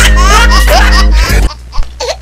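A comic laughter sound effect, a run of rising 'ha-ha' calls, laid over music with a heavy bass. It cuts off abruptly about a second and a half in.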